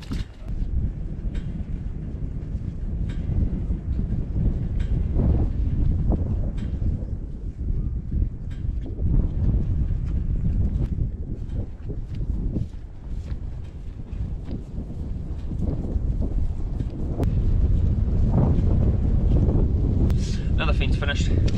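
Wind buffeting the microphone: a steady, gusting low rumble with a few faint clicks.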